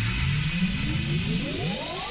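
Trance music build-up: a synthesizer riser of several layered tones sweeping steadily upward in pitch.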